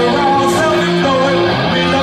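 Live rock music from a lone electric guitar with singing.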